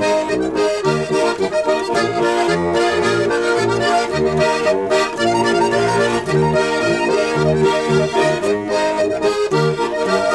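Two diatonic button accordions playing a polka as a duet, with chords over a steady, repeating bass pattern.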